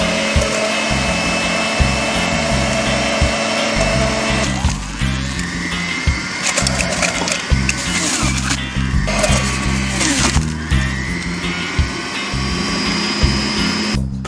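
Electric centrifugal juicer running as leafy greens are pressed down its chute, over background music with a steady beat. A steady whine gives way to a rougher rushing noise about four seconds in.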